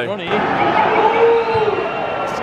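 Large stadium crowd, many voices shouting and calling at once in a steady, continuous din.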